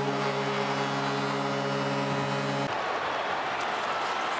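Arena goal horn blaring as one steady tone for under three seconds, then cutting off sharply, signalling a goal, over a loud, roaring arena crowd.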